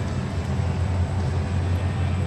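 Large ceiling fans running overhead: a steady low rumble.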